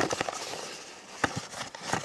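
A few light taps and clicks from a small cardboard box being handled on a wooden table, a cluster near the start and a sharper knock a little past halfway.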